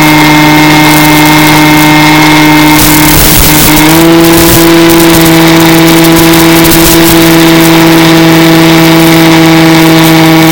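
Mini Skywalker RC plane's electric motor and propeller droning steadily as heard from on board, with a short rush of noise about three seconds in. Just after that the pitch steps up and holds, as the throttle is raised.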